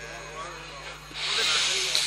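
A long breathy hiss into the microphone, starting about a second in and fading after about a second and a half: the Quran reciter drawing breath before his next phrase, over a faint murmur from the gathering.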